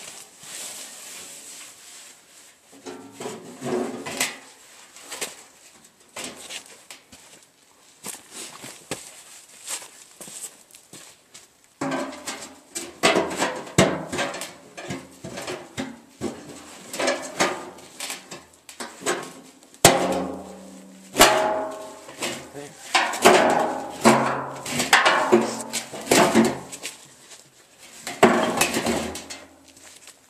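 Steel drum and cut-off steel tank clanking and ringing as the tank is pried and knocked down into the hole cut in the drum's top for a test fit. The knocks come irregularly: a few in the first half, then a dense run of ringing metal knocks through most of the second half.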